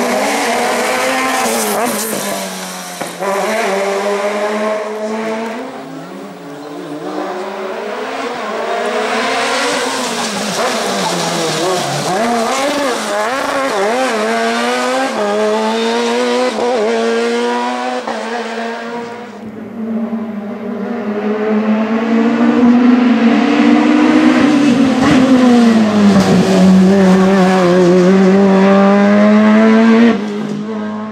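Sports prototype race car engine at full throttle, revving up through the gears and dropping in pitch as it brakes and downshifts for tight hairpins, over and over. The loudest stretch comes near the end as the car passes close by.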